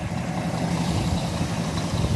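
Diesel coach engine idling steadily, a low even rumble, which is most likely this Scania K340's Euro 5 Scania engine.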